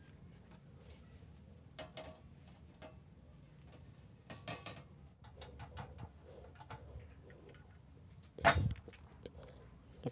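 Small metal clicks and taps of spacers and screws being handled and tightened into the steel floor panel of an amplifier case, with a quick run of light ticks in the middle and one louder knock near the end.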